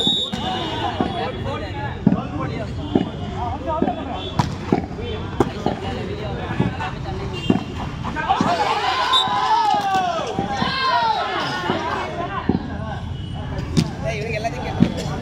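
Volleyball being struck by hands during a rally: a series of short, sharp slaps about a second apart. Players and spectators shout throughout, loudest from about eight seconds in.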